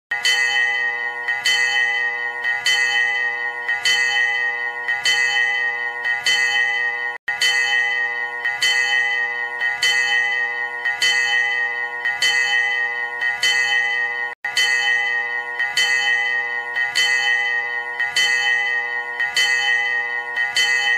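A bell struck at a steady pace, about once every 1.2 seconds, each strike ringing on into the next. The sound cuts out briefly twice.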